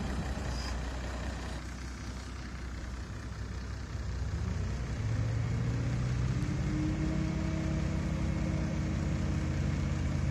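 Heavy diesel engine running steadily at the cane-unloading platform, growing louder with a steadier hum about five seconds in.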